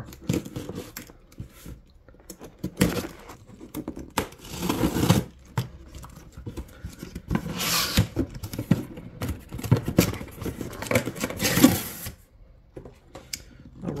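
A sealed cardboard shipping case being opened: packing tape slit and torn, and the cardboard flaps pulled back. Four longer rasping tears stand out among smaller scrapes, clicks and knocks.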